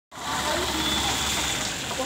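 A car driving slowly past, its low engine hum fading about a second and a half in, with voices in the background.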